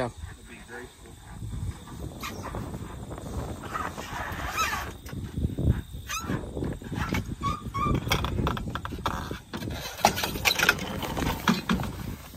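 Honda CRF450R dirt bike being rolled backwards off a pickup bed and down an aluminium loading ramp, its engine not running: scattered knocks and clanks from the wheels and ramp, with scuffing and low rumbling handling noise.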